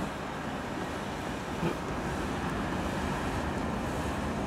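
GE ES44AC diesel locomotives running with a steady low rumble.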